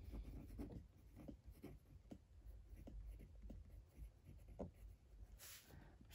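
Faint scratching of a pen writing a word by hand on lined notebook paper, in many short strokes.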